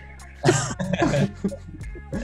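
A man laughing in a few short bursts over soft background music.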